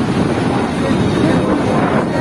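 Strong storm wind buffeting the phone's microphone: a steady, loud rushing noise.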